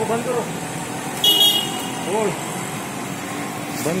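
Street traffic noise with a short, high-pitched vehicle horn toot about a second in.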